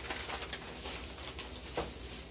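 Paper grocery bags rustling and crackling as hands rummage through them, a dense run of small crinkles.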